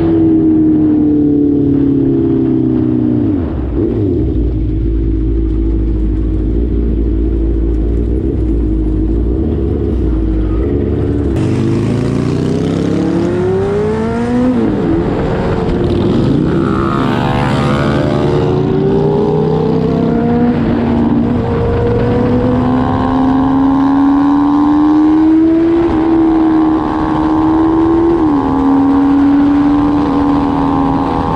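Honda CBR650R's inline-four engine heard from the rider's seat. The revs fall briefly about three seconds in, then the bike accelerates hard through the gears: the pitch climbs in long rising sweeps and drops sharply at each upshift, twice close together near the end.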